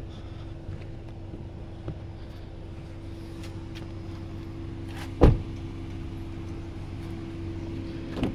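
A car door shutting with a single heavy thump about five seconds in, over a steady low hum.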